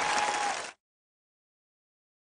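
Studio audience applause with a single held note over it, cut off abruptly about three-quarters of a second in, then dead silence.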